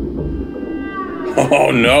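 TV drama soundtrack: a few falling, eerie music tones over a low rumble, then a voice cutting in about a second and a half in.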